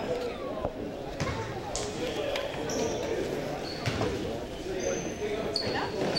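A basketball bouncing on a hardwood gym floor during play: irregular thuds with the hall's echo, and short high sneaker squeaks, more of them in the second half.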